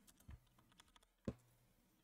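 Faint computer keyboard keystrokes in near silence, a couple of soft clicks, the clearest about a second and a quarter in.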